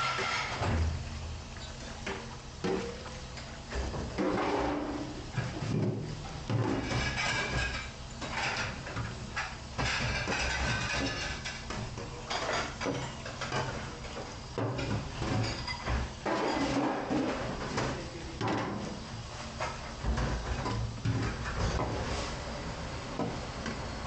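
A large stainless-steel pan being hand-scrubbed in a steel sink full of soapy water. Water sloshes and splashes, and the metal pan knocks and scrapes against the sink, in irregular bursts.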